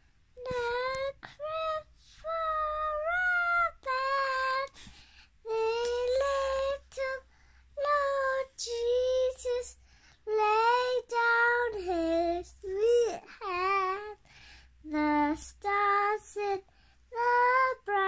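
A young girl singing unaccompanied, in short phrases of held notes with brief pauses between them.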